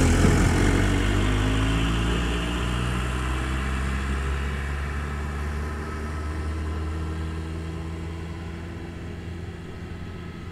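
An engine passing by, loudest at the start and then fading away over the following seconds as its pitch drops.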